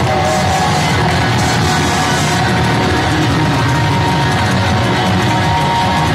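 Live rock band playing loudly: electric guitars, bass guitar and drums together. A long high note is held over the band.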